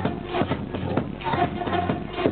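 Loud electronic dance music played by a DJ over a club sound system, with a steady beat of about two kicks a second.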